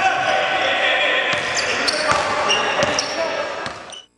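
Basketball game sound in a gym hall: voices calling and echoing, with a ball bouncing and a few sharp knocks on the court. It fades out near the end.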